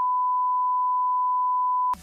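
A steady electronic beep: one pure, unwavering tone at constant loudness that cuts off suddenly near the end.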